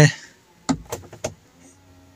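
Electrically adjusted door mirror on a Mahindra Thar: a few short clicks as the mirror control is worked, then the small mirror motor humming faintly as the glass tilts.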